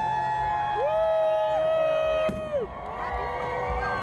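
A crowd watching fireworks whooping and cheering in long held voices, with one sharp firework bang a little past halfway.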